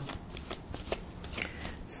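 A deck of tarot cards being shuffled by hand, overhand style: soft, irregular flicks and slides of card against card.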